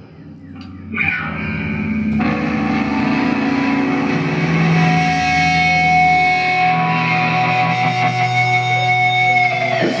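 Amplified electric guitars and bass holding sustained, droning notes, with steady high ringing tones over them. It starts suddenly about a second in, swells, and cuts off just before the end.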